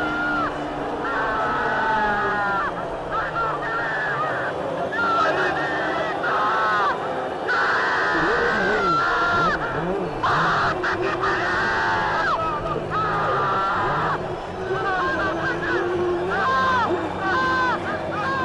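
A racing driver yelling and screaming over the team radio in long, high-pitched cries of joy and exhaustion after winning the race, with a low steady engine note underneath.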